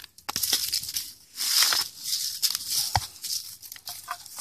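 A hand scraping and rummaging through dry dirt, dead leaves and broken cinder block chunks, gritty rustling in uneven bursts with a few small knocks of fragments against each other.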